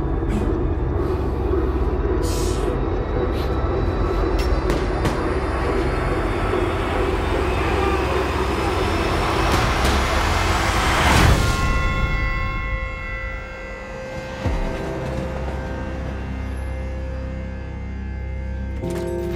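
Trailer score and sound design: a dense swell that rises to a peak about eleven seconds in and breaks off, with a few sharp hits in the first seconds. Held, sustained chords follow the peak.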